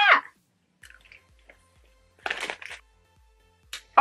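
Person chewing a giant Skittles sweet: a few soft chewing and crunching sounds, the loudest about two and a half seconds in, over quiet background music with a low bass line.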